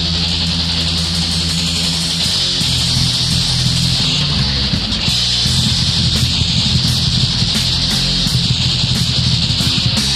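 Heavy metal band on a 1994 demo recording playing an instrumental passage: distorted electric guitars and bass riffing over drums, with regular cymbal strikes from about halfway through.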